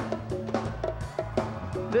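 A live band playing an instrumental vamp with drum and hand-percussion hits to the fore over a steady bass note.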